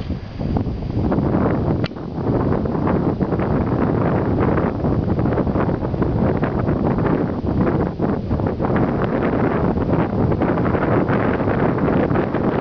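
Wind buffeting the microphone: a loud, continuous, unevenly gusting rumble.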